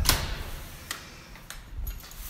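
Front door handle and latch clicking as the door is opened: one sharp click at the start, then a couple of lighter clicks and a short rustle.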